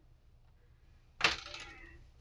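Rubber sink strainer set down on a disposable aluminium foil tray: one sudden clatter a little over a second in, with a short ring fading after it.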